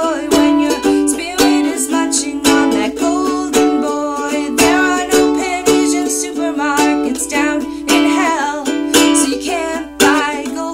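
Ukulele strummed in a steady rhythm, chords accented about once a second with lighter strokes between, playing an instrumental passage of a song.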